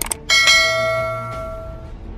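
Bell-ding sound effect for a clicked notification bell: two quick clicks, then one bright bell chime that rings out and fades over about a second and a half, over faint background music.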